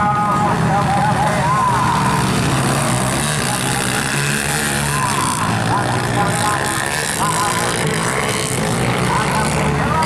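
Dirt bike engines running on a motocross track, their pitch rising and falling repeatedly as the riders rev, with voices in the background.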